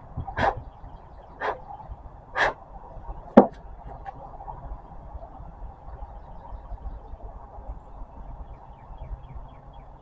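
Wood being handled at a workbench: three short scuffs about a second apart, then a sharp knock as the wooden sanding block is set down on the bench top, followed by quiet low background noise.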